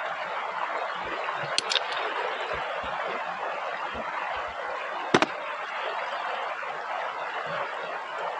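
A mountain stream rushing steadily over gravel, with clicks of gear being handled: two light ones about a second and a half in and a sharp knock about five seconds in.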